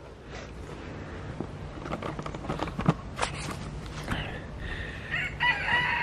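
A rooster crowing: a short call about four seconds in, then a long drawn-out crow near the end. A few scattered knocks come before it.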